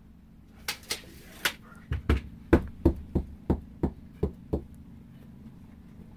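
A few light clicks, then a run of about nine evenly spaced knocks on the wooden bench frame, roughly three a second, stopping about two-thirds of the way through.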